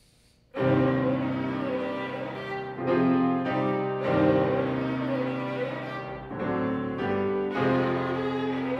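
Violin and grand piano start playing together about half a second in, after near silence: the opening of a live classical violin-and-piano performance, in sustained chords and phrases.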